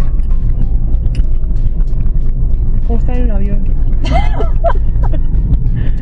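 Steady low rumble of a car driving, with music and a voice over it about halfway through.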